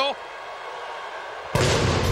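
Low steady arena crowd noise, then about one and a half seconds in a sudden loud blast of entrance pyrotechnics going off on the stage, the sound staying loud after it.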